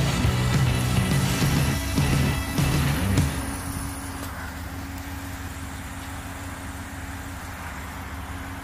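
Music with a low bass line plays for about three seconds, then stops abruptly. After that a steady low vehicle engine idle remains.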